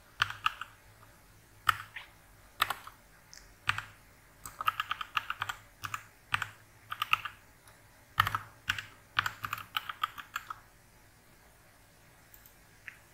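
Typing on a computer keyboard: sharp keystrokes in short irregular bursts that stop shortly before the end.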